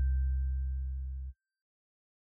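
Tail of a short electronic music sting: a deep sustained synth note with a faint high chime tone above it, fading out steadily and cutting off to silence a little over a second in.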